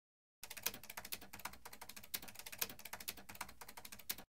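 Typing sound effect: a rapid, uneven run of key clicks that starts about half a second in and stops abruptly at the end, laid under text being typed onto the screen letter by letter.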